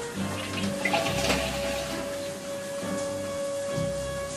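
Running water from a shower, with background music holding a long steady note from about a second in.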